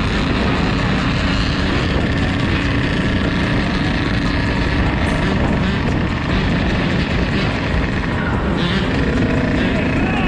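Dirt bike engines running steadily at riding speed, with wind noise over the microphone.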